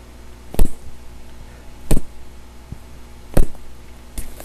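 Three strikes on a homemade striking pad cut from a recycled bar-stool cushion, each a single thud, about a second and a half apart.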